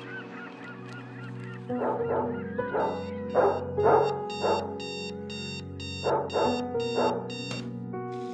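Sony digital clock radio's alarm beeping rapidly, about two and a half beeps a second, until it cuts off with a click near the end: the morning wake-up alarm. Soft piano music plays throughout, with two runs of louder rough bursts mixed in.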